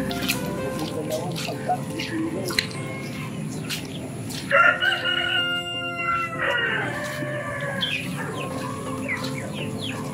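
A rooster crowing once, starting about halfway through; the long call breaks briefly and ends with a falling pitch.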